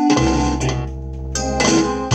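Piano music: several chords struck in turn over sustained low bass notes.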